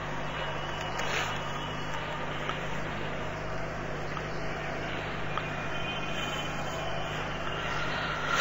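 Steady background hiss with a low, even hum, with no clear event standing out.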